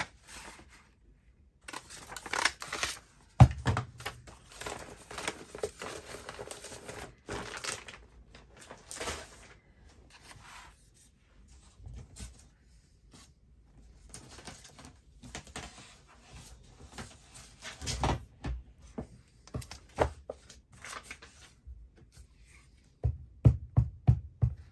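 Paper rustling and being handled, with one sharp clunk about three seconds in from a lever craft punch (a whale-tail punch) cutting a shape out of paper. A few more knocks and taps come near the end.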